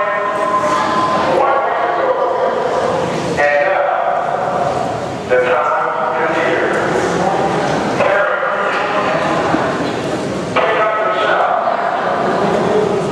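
A marching band sounding together in a large echoing hall: loud held group notes in phrases that start anew with a sudden rise about every two to three seconds.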